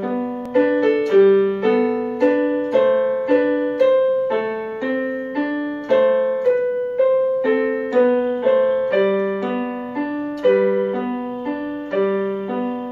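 A waltz played with a piano voice on an electronic portable keyboard: a melody of evenly paced single notes, each struck and fading, over recurring low notes.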